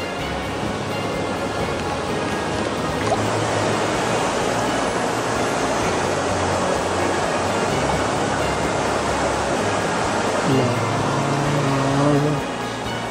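Shallow river rapids rushing steadily over rocks, with background music carrying sustained low notes underneath.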